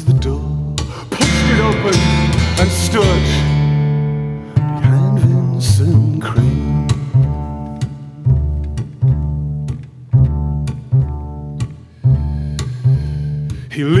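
Instrumental passage of live acoustic band music: a double bass plays a repeating line of low notes under a strummed acoustic guitar. Singing comes back in at the very end.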